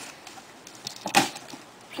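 Two short, sharp clicks about a second in, from handling a cardboard shipping box as it is about to be opened.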